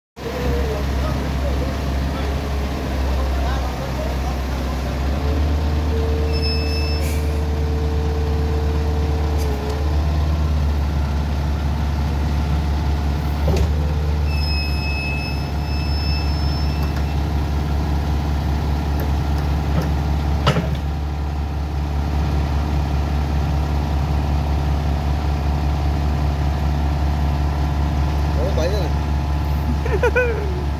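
Mini crawler excavator's diesel engine running steadily under load while its hydraulics work the boom and blade to lower it off a dump truck bed, with a steady hydraulic whine for a few seconds and a couple of sharp metal clanks.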